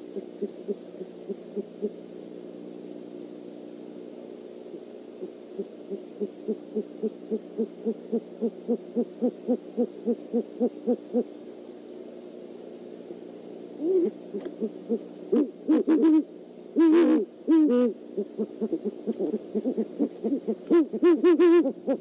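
Great horned owls calling: a long run of short, quick low hoots, about three a second. In the last several seconds come louder, more complex calls.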